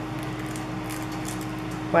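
Steady low background hum with a few faint, light crackles of a sticker sheet being handled about half a second to a second and a half in.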